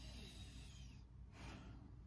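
Near silence in a small room, with a faint soft breath.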